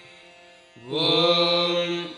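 A man chanting a long, steady "Om" on one held note, beginning about a second in after a short quiet gap.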